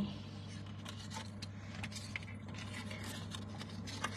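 Faint light clinks and rustles of a gold chain necklace being lifted and handled, over a steady low hum.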